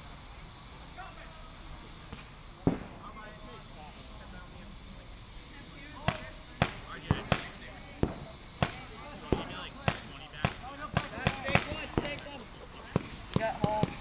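Paintball markers firing: a single sharp shot, then from about six seconds in an irregular string of about fifteen shots, a few quick pairs among them.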